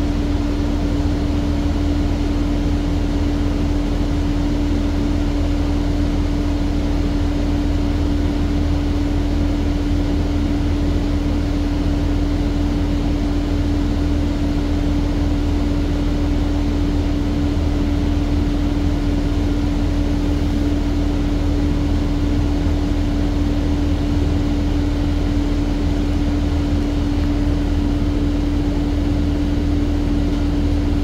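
Inside the cabin of a New Flyer C40LFR natural-gas transit bus: the engine and drivetrain drone steadily, with a constant hum tone over a low rumble that does not rise or fall.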